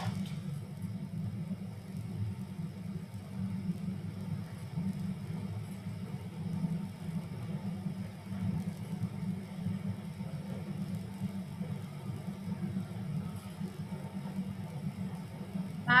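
Steady low background rumble on a video-call microphone, with no speech over it.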